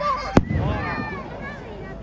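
Aerial firework shell bursting overhead with a single sharp bang about half a second in, then a lingering low rumble.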